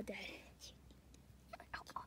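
A spoken word ends right at the start, followed by a quiet stretch with faint breathy whispering and a few soft clicks.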